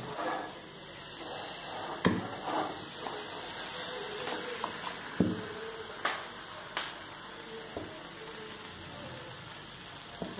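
Steady hiss from an aluminium pressure cooker heating on a lit gas burner, with several sharp knocks scattered through it.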